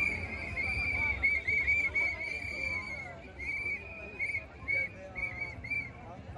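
Many hand whistles blown by protest marchers, short and longer blasts overlapping in quick succession, thinning out after about three seconds, over crowd chatter.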